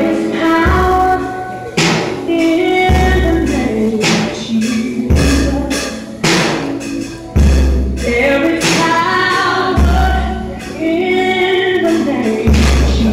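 A gospel song with a singing voice and bass notes, with drum and cymbal hits from a child's First Act drum kit played along over it.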